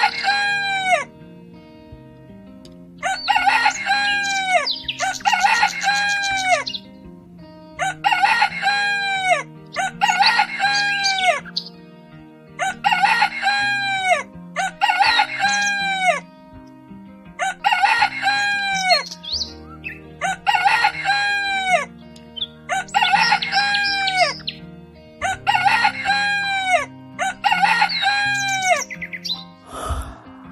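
Rooster crowing about a dozen times at even intervals of two to three seconds, each crow about a second long and ending on a falling note, over soft background music.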